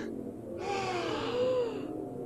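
A person's long, breathy gasp, starting about half a second in and lasting over a second, with a faint voice in it that falls and then rises.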